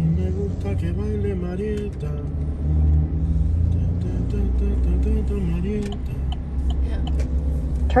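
Steady low rumble of a car's cabin while driving, with a quiet voice over it for the first six seconds or so.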